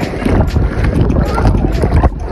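Fast-flowing river water splashing and bubbling against a waterproof camera held at the surface, with a heavy low rumble of water buffeting the microphone; it turns muffled as the camera goes under near the end.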